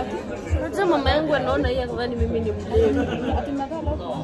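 Voices chatting at the table, over background music with a steady low beat about twice a second.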